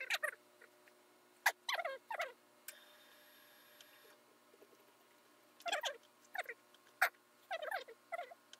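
Heavy tailor's shears cutting through suit cloth in a steady hiss for about a second and a half in the middle, with two sharp clicks, the louder one near the end. Short clusters of quick, high, falling chirps come and go throughout.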